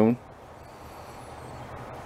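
A man's voice ending a phrase, then quiet, steady background hiss with no distinct sound.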